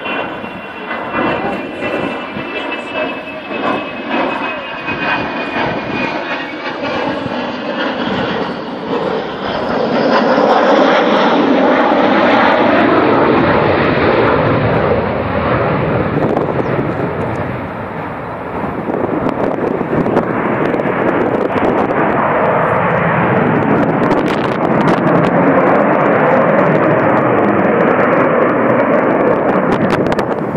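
Avro Vulcan XH558's four Rolls-Royce Olympus turbojets in flight: a high whine that slowly falls in pitch over the first several seconds, then a loud, steady jet roar from about ten seconds in, dipping briefly and returning.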